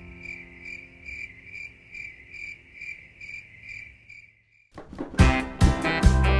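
Cricket chirping sound effect for a night-time scene, a steady pulse of about three chirps a second over the fading tail of a low music chord, stopping at about four and a half seconds. Just before the end a new bright song starts with strummed guitar.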